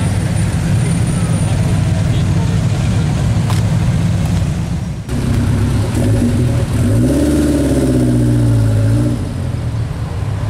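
Car engines running with a deep, steady rumble in slow parade traffic, with one engine revving up about seven seconds in and holding the higher revs for a couple of seconds before easing off.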